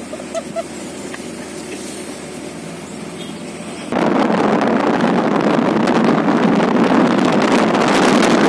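Steady road and engine noise from a moving vehicle. About four seconds in it switches abruptly to loud wind buffeting on the microphone while riding in the open back of the vehicle.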